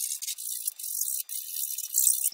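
Metal hand file rasping in several quick strokes against the edge of a lens aperture ring, evening out a freshly ground notch.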